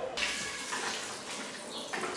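Water running steadily from a kitchen tap; it starts abruptly right at the beginning.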